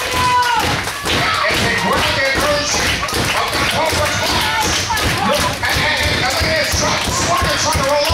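Wrestling crowd shouting and calling out, with frequent taps and thumps mixed in.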